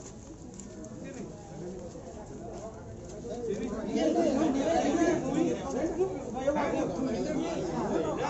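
Several people talking over one another, the chatter getting louder about halfway through.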